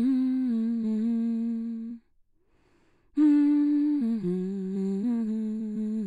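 A person humming a slow tune in long held notes. The hum stops about two seconds in, then resumes a second later, stepping down and back up in pitch.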